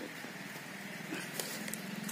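A faint, steady, low engine-like hum with a fine even pulse, and a light metallic click about one and a half seconds in.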